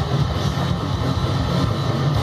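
Distorted electric guitar in drop D tuning, chugging a fast, low heavy-metal riff at a steady loudness.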